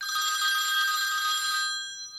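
A telephone ringing: one long ring of steady high tones that starts suddenly and fades away after nearly two seconds.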